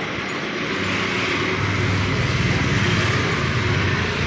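Motor scooters riding across a railway level crossing, their small engines running as they pass, over steady street traffic noise. The engine hum builds from about a second in and stays strong until near the end.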